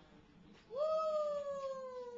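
A child's long, held cheer, starting about two-thirds of a second in: one sustained note that slowly falls in pitch.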